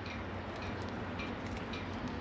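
Faint rubbing as the scored rubber jacket of a heavy copper battery cable is twisted and pulled off the stranded conductor by hand, with a few soft squeaks, over a steady low hum.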